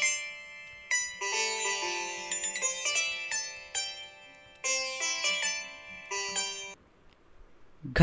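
Sitar playing a short melodic run of plucked notes that stops about a second before the end.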